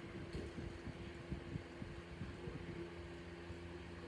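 Faint room tone: a steady low electrical-sounding hum with soft, irregular low knocks.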